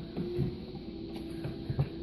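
Faint small clicks of a plastic computer connector being handled as its metal pin is pulled out of the opened housing, over a steady low hum.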